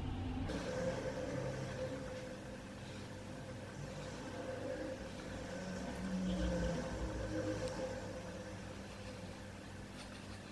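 Faint steady background hum with a low rumble that swells briefly about six seconds in.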